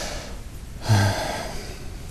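A man's quick, audible in-breath about a second in, with a brief voiced hum at its peak.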